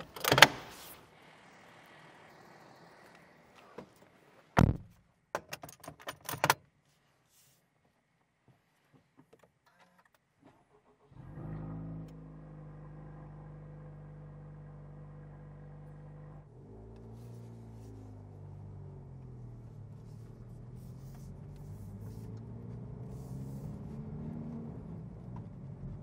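A few sharp clicks and knocks in the first seven seconds. After a short silence, a Honda Civic Type R FL5's turbocharged 2.0-litre four-cylinder engine is heard from inside the cabin, running steadily for about five seconds. Its note then dips and climbs slowly as the car picks up speed.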